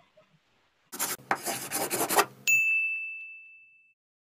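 Logo sting sound effect: a rough, scratchy swish for about a second and a half, then a single bright, high ding that rings and fades away over about a second and a half.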